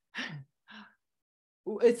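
Two brief breathy vocal sounds from a person: the first lasts about a quarter second and falls slightly in pitch, and the second is shorter. Speech resumes near the end.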